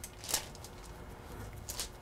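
Chef's knife cutting through soft bread dough and pressing onto parchment paper on a wooden board: two brief soft scraping rustles, the louder about a third of a second in and a fainter one near the end.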